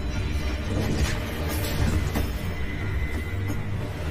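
Loud, dramatic background score with a heavy, continuous low rumble of percussion and repeated sharp strikes.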